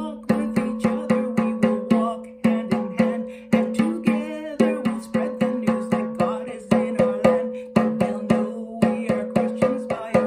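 A woman singing a song while beating a Remo hand drum with a wooden stick in a steady rhythm of about four strikes a second, the drum ringing on between strikes.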